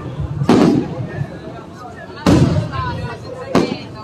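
Aerial firework shells bursting overhead: three loud bangs, the first about half a second in and the other two near the middle and end, each followed by a short echoing tail.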